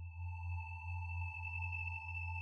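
Electronic sci-fi drone: a deep steady hum with several steady, pure high tones held above it.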